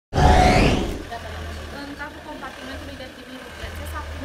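A short, loud whoosh rising in pitch from a news logo intro, then a steady low hum from an idling vehicle engine with faint voices.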